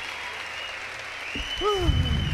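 Concert audience applauding after a blues song ends, with a long high whistle over the clapping and a shout from someone about one and a half seconds in.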